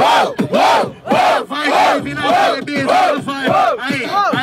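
Beatboxing into a hand-cupped microphone: a vocal beat of rising-and-falling pitched sweeps about twice a second, with a steady held hum under it for about a second and a half in the middle.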